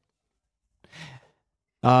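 A man's short, soft sigh about a second in, in otherwise dead silence.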